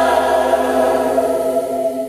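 Five-voice vocal jazz ensemble singing into microphones, holding a sustained close-harmony chord that starts to fade away at the very end.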